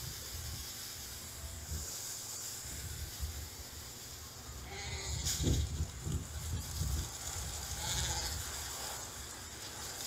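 Shetland sheep bleating faintly a few times, over a steady low rumble of wind on the microphone.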